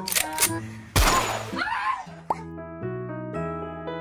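A loud cartoon-style hit sound effect about a second in, dying away over about a second, followed by cheerful background music with a steady low bass line.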